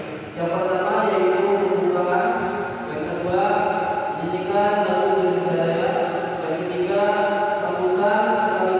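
A man's voice chanting through a microphone in long, drawn-out melodic phrases, holding each note for about a second.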